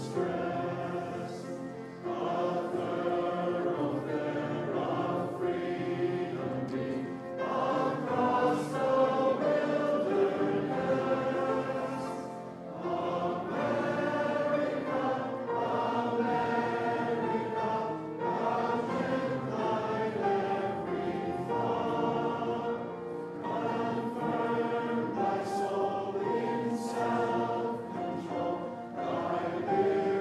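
A standing audience singing an anthem together, led by a vocalist, in slow sustained phrases with short breaks between lines about 2 and 13 seconds in.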